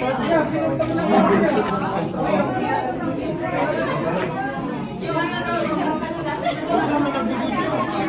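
Many people chatting at once in a large hall with hard floors: a mix of overlapping voices, none standing out.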